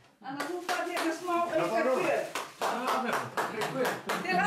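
A few people clapping their hands in quick irregular claps, starting about half a second in, under lively talk.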